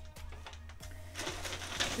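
Food packaging rustling and being handled, with a few light clicks, over faint music.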